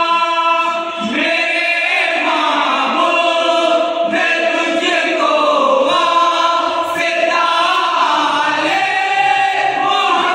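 A group of men singing a naat together without instruments, into one microphone. Their voices hold long notes and slide between them.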